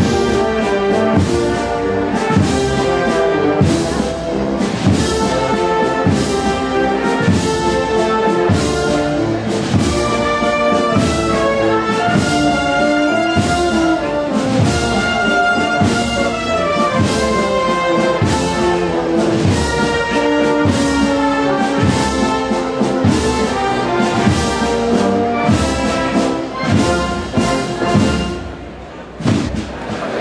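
Brass band playing a slow processional march, with sustained brass chords over a steady, evenly spaced drum beat; the music fades out near the end.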